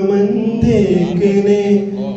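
A man singing slowly into a handheld microphone, holding long notes that bend gently in pitch.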